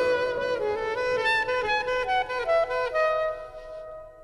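Slow, relaxing saxophone melody over soft sustained backing, moving note by note, then fading out near the end.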